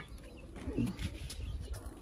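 A faint, short bird call about a second in, a single low downward-gliding note, over quiet outdoor background.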